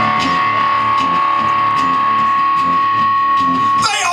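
Acoustic and electric guitars playing an instrumental break: a steady strummed rhythm with regular strokes and one long, steady high note held over it. A voice comes in right at the end.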